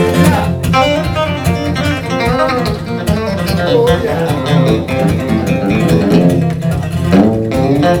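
Electric guitar and acoustic guitar playing an instrumental break in a country song, with quick runs of single notes over a steady strummed rhythm.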